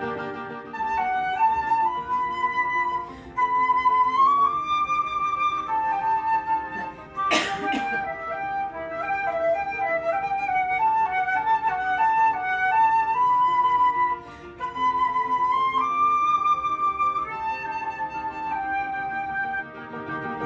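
Solo flute playing a melody of held notes that step up and down, with a short run of quicker lower notes in the middle. One sharp crackle or knock cuts through about seven seconds in.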